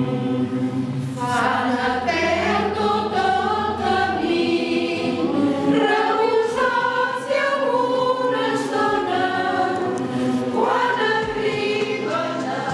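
Mixed choir of women's and men's voices singing together, with a new phrase starting about a second in and another near the end.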